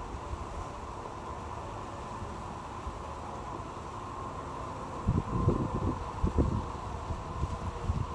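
Steady outdoor background noise, with wind buffeting the phone microphone in low rumbling gusts from about five seconds in.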